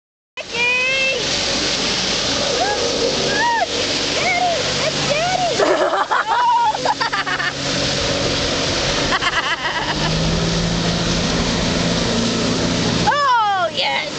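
A motorboat towing an inner tube passes close through its wake, over a constant rush of water. A steady engine drone stands out from about ten seconds in. Voices call out during the first half.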